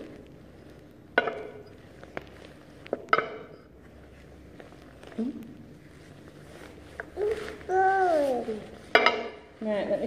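A few sharp taps of small kitchen items (a ceramic bowl, a plastic cup) being stamped down onto a painted tabletop, each with a short ring. Near the end comes a drawn-out wordless voice sound that bends and falls in pitch.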